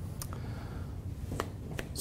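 A steady low room hum with three short, sharp clicks, two of them close together near the end.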